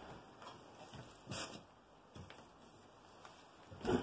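Faint rustling of clothing and handling of a handheld camera, with a brief louder rustle about a second and a half in.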